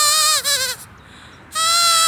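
A grass blade stretched between the thumbs and blown through, making a bleat-like reedy whistle: a wavering tone stops about half a second in, a short one follows, and a steadier, longer one starts about halfway through.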